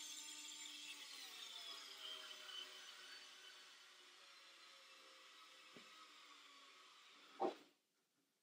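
Milwaukee M4 4-volt pocket screwdriver on its low speed, driving a screw into wood under heavy load. Its faint motor whine slowly drops in pitch and fades as the screw bites deeper and the tool bogs down.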